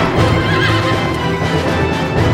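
Trailer score music over horses galloping in a cavalry charge, with a horse whinnying about half a second in.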